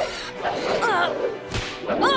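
Cartoon fight sound effects over action music: sharp swishes and hits, with a short shrill creature screech that rises and falls in pitch about a second in and again at the end.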